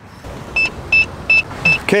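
Electronic code keypad on a locking cache box beeping four times, short even beeps about half a second apart, as a code is keyed in to let the latch lock.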